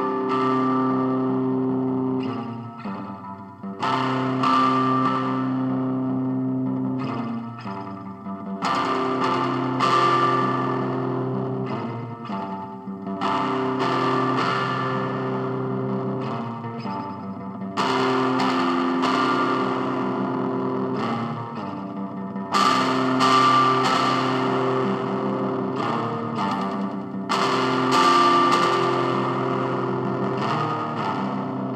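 Music: distorted electric guitar with effects, playing a slow repeating chord pattern, with a new chord struck about every four to five seconds.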